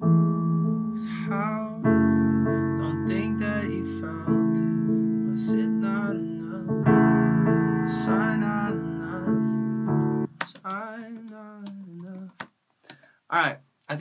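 Piano chords played from a MIDI keyboard, each held for about two seconds before the next, with a man singing a melody softly over them. The piano stops about ten seconds in, leaving only his voice.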